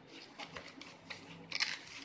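Cardboard and plastic packaging being handled: light clicks and rustles, with a louder crinkle about a second and a half in.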